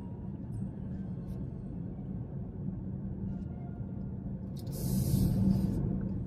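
Steady low road and engine rumble inside a moving car's cabin, with a brief hiss lasting about a second near the end.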